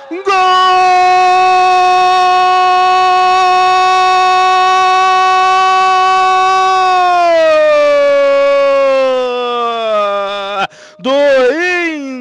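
A football commentator's long drawn-out goal call, one voice holding a high "goool" for about seven seconds, then sliding down in pitch for about three more, announcing a goal. Commentary speech picks up again near the end.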